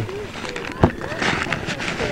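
Voices of people at the ball field chattering in the background, with one sharp knock a little under a second in.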